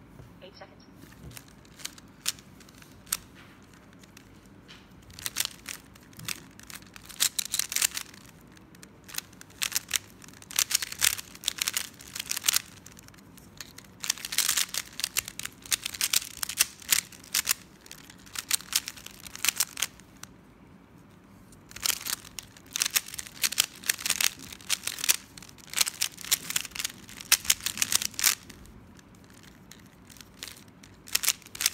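A 3x3 speedcube being turned fast: rapid plastic clicking of its layers in dense runs, starting about five seconds in, with a pause of a second or so about two-thirds through, and stopping near the end.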